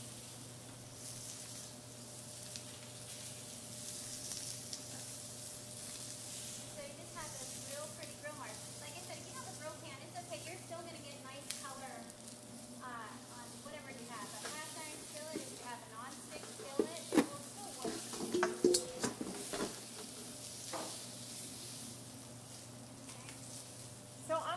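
Sliced vegetables sizzling in oil in pans on a gas range, over the steady low hum of the range hood fan. A few sharp clacks of metal tongs against the pans come in a cluster about two thirds of the way through.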